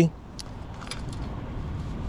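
A few faint metallic clicks and clinks as a folding e-bike's seat post is handled and slid into the frame's seat tube, over a low, steady background noise.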